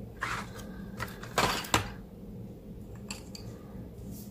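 A few short, light clicks and knocks of craft supplies being handled on a tabletop as a coloured pencil is picked up and the cardstock panel is moved into place, over a steady faint hum.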